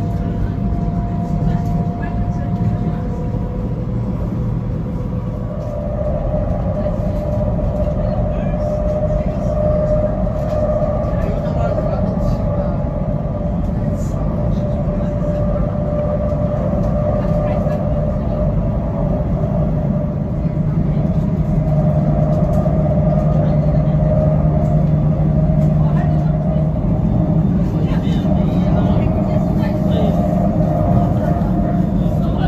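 Interior running noise of a high-speed train carriage in motion: a steady low rumble with a constant whine above it. The whine steps slightly down in pitch a few seconds in.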